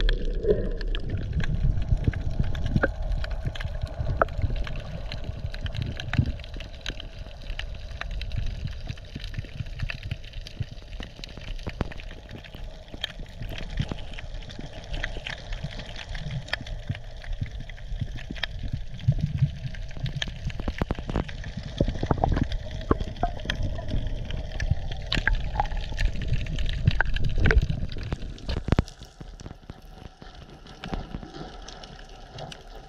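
Underwater sound picked up by a diver's camera: water moving and gurgling against the housing, with many scattered sharp clicks and crackles throughout. The sound drops away near the end.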